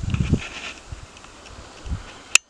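Wind gusting on the microphone outdoors: low rumbling buffets at the start and again near the end, with faint rustling in between.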